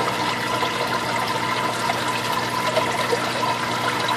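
Water running steadily in a reef aquarium sump, with a steady hum beneath it.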